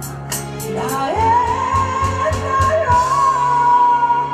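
A pumba (각설이) singer sings a trot-style song over backing music with drums and hi-hat. About a second in the voice rises into one long high note that is held to the end. The drum beat stops about three seconds in.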